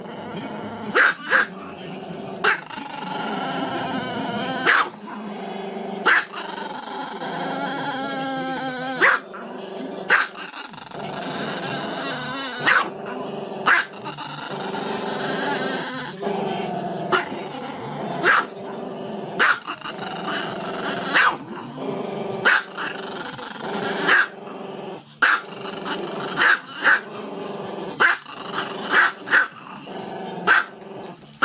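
Chihuahua howling with its muzzle raised: long, wavering, drawn-out notes broken by frequent short, sharp yips.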